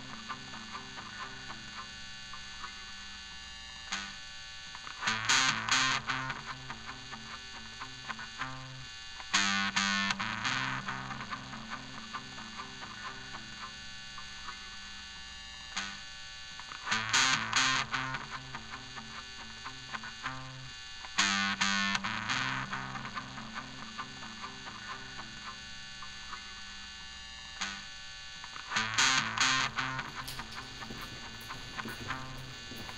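Film score music: an electric guitar played through distortion and effects, a repeating low phrase with bright swells that come back every few seconds.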